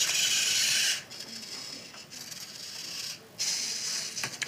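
Toy robot's motors whirring as it moves its arm: a loud high whir for about the first second, quieter mechanical noise after it, then another whir near the end.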